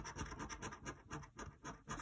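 Scratching the latex coating off a scratch-off lottery ticket in quick, repeated short strokes, about four a second.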